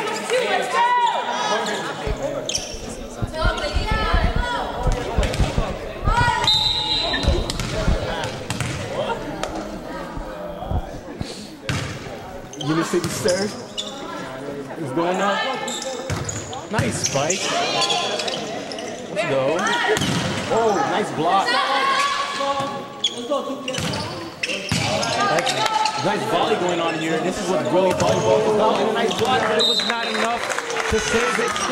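Volleyball play in a school gym: players' and spectators' voices echoing in the hall, with ball strikes and thuds of players on the wooden court. A short, high whistle blast sounds about six seconds in and again at the very end.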